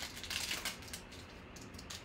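Foil wrapper of a 2020 Panini Prizm football card pack crinkling as it is torn open by hand: a run of short crackly rustles, with a few more near the end.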